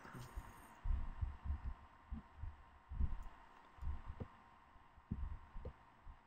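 Faint, irregularly spaced dull low thumps, about eight in all, from knocks and handling bumps on the desk or microphone while the mouse is worked.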